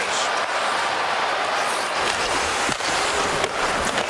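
Steady noise of an ice hockey arena crowd during live play, with skates scraping on the ice and a couple of sharp knocks in the second half.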